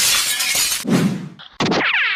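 Cartoon sound effect: a crash of shattering noise lasting about a second, then a second short effect with sliding high pitches near the end.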